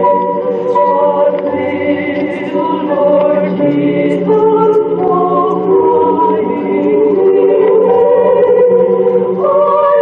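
A choir singing a hymn in sustained chords, the voices holding each chord for a second or so before moving together to the next.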